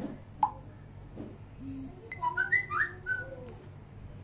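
A short high blip, then about a second and a half of quick chirping whistles gliding up and down in pitch, over a low steady hum.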